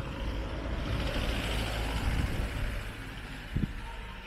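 A motor vehicle passing on the street: engine and tyre noise swell to a peak a second or two in, then fade away.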